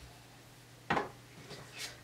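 Craft supplies being handled on a tabletop: one sharp knock about a second in, then a couple of softer rustles.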